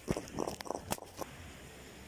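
Several short scuffs and knocks in the first second or so as a freshly landed fish is handled on the ground, then only a faint steady hiss.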